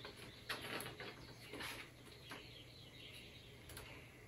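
Picture-book page being turned by hand: a few faint, brief paper rustles and soft scrapes.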